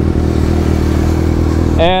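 Sportbike inline-four engines idling steadily at a standstill, a constant low running note.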